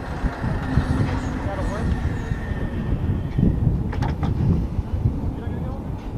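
MH-139A Grey Wolf helicopter running on the ground, its twin turboshaft engines and turning rotors making a steady rumble.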